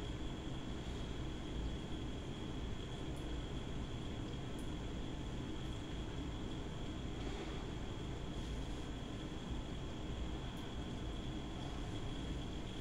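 Steady hiss and low hum of running equipment, with a faint high whine held steady over it.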